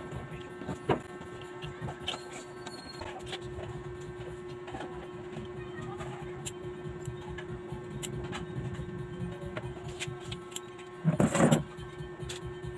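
Scissors and fabric being handled: scattered small clicks and rustles over a steady hum, with one louder rustle of about half a second near the end.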